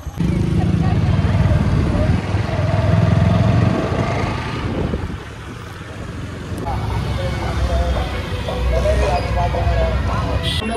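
Riding on a two-wheeler: wind buffets the microphone in a heavy rumble, with the engine and street traffic beneath it. It eases off briefly about halfway through.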